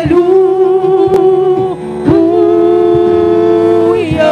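Church choir singing gospel through microphones and a PA, holding one long note, then after a brief break about two seconds in, another long note with a slight vibrato.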